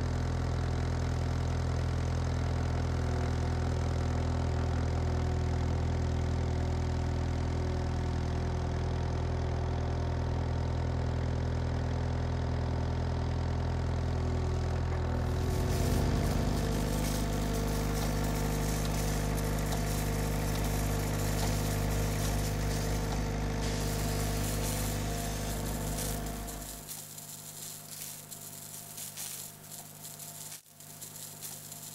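Diesel engine of a SealMaster SP 300 Dual sealcoating machine running steadily while the machine drives and turns. Its note shifts about halfway through, and near the end the engine sound drops away to a quieter hiss.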